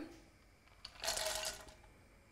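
Pieces of plain chocolate tipped from a small bowl clattering into a ceramic heatproof bowl: a light click, then a short rattle lasting under a second with a faint ring from the bowl.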